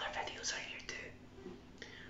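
A man speaking quietly, almost in a whisper.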